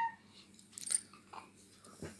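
A toddler's babbling ends on a falling note at the very start. About a second in there is a short sharp click, then a fainter soft sound shortly after.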